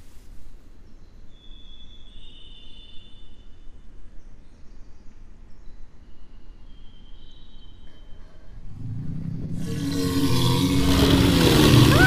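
Low ambient rumble with a few faint high tones, then from about nine seconds in a film dinosaur roar rises and grows steadily louder toward the end.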